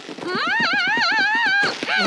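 A young woman's high, wavering whine from the anime's soundtrack, rising and falling in pitch with a quick pulsing underneath, held for about a second and a half.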